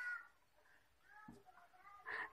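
Near silence, with faint pitched calls in the background that rise and fall.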